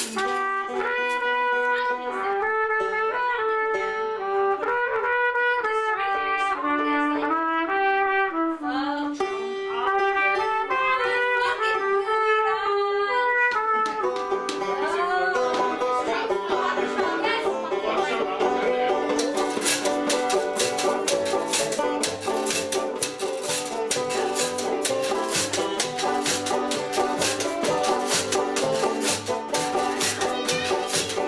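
Live acoustic band playing: a trumpet carries a stepwise melody over banjo for the first half, then the whole band comes in, with a steady shaken-percussion beat from about two-thirds of the way through.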